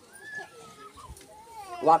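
A long, high-pitched call gliding down in pitch over about a second and a half, faint against a gathered crowd of children. A man starts speaking loudly near the end.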